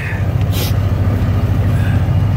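1982 Fleetwood Tioga motorhome's engine running steadily with a low, even drone, heard from inside the cab. A brief hiss cuts in about half a second in.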